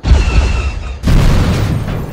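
Two heavy booming explosion sound effects, the second about a second after the first.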